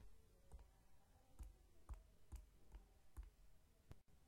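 Faint clicks, about seven at uneven intervals, of computer input as a function definition is entered into calculator software.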